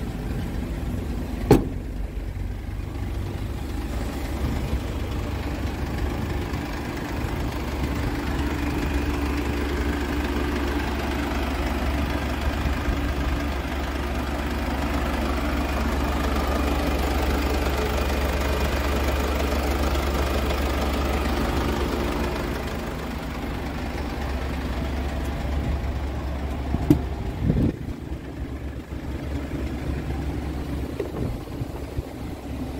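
Mercedes Sprinter van's engine idling steadily, a little louder midway while the open engine bay is close by. A sharp click about a second and a half in and a couple of knocks near the end.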